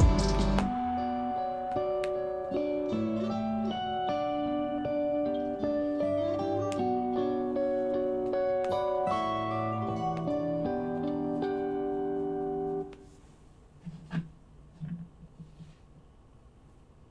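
Fingerstyle guitar duet of an acoustic guitar and an electric guitar playing a smooth, laid-back melody of plucked, ringing notes over a low bass line. The music stops about 13 seconds in, leaving only faint scattered sounds.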